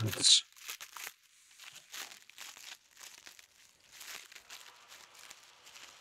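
Clear plastic packaging bag crinkling in short, quiet, irregular bursts as small parts are handled and unwrapped by hand.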